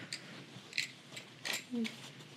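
A few faint, scattered clicks and handling noises as small items of packing gear are picked up and moved, with a short murmur near the end.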